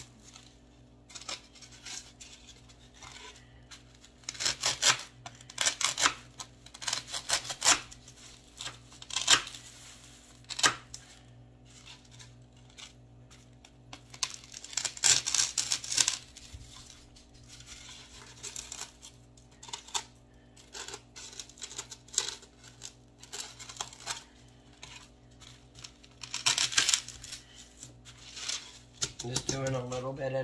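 Kitchen knife shaving the edge of a styrofoam disc: irregular bouts of scraping and crunching of the foam, with short pauses between strokes.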